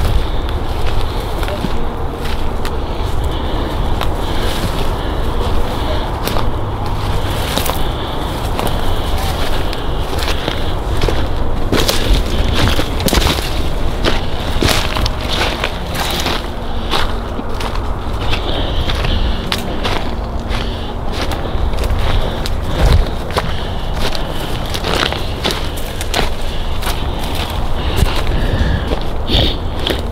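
Footsteps crunching and rustling through dry fallen leaves and brush, a dense run of crackles and snaps, with a steady low rumble on the handheld microphone.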